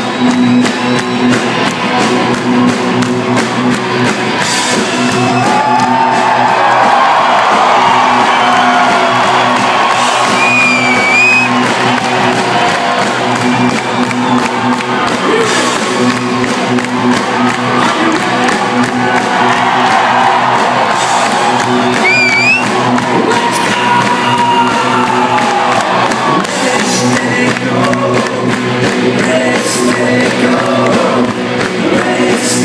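Live rock band playing a song intro with electric guitar, bass and drums, heard loud from within the crowd. Fans cheer and whoop over the band, with a couple of short rising whoops about ten seconds in and again past twenty seconds.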